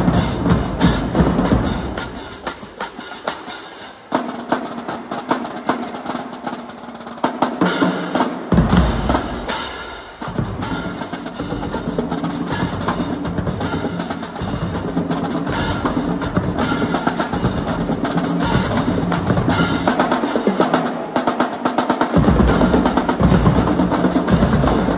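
Marching drumline playing snare drums, tenor drums, bass drums and crash cymbals. The bass drums drop out a couple of seconds in, leaving lighter snare and tenor playing. After a short lull about ten seconds in, the full line plays a steady, driving cadence.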